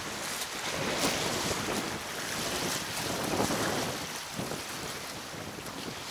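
Wind buffeting the microphone, with waves lapping against the riverbank.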